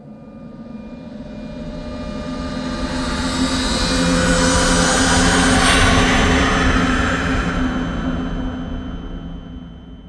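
A jet-aircraft flyby sound effect: a rushing roar that builds slowly to its loudest about six seconds in, then fades away.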